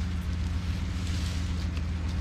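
An engine idling steadily, with a few faint clinks from a tow chain being wrapped around a stump.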